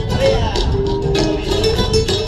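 Flamenco music: guitar with a held, wavering sung voice over it and sharp percussive strokes.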